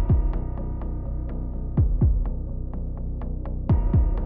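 Dark, brooding background music: a steady low drone with a heartbeat-like double bass thump about every two seconds and quick light ticks in between.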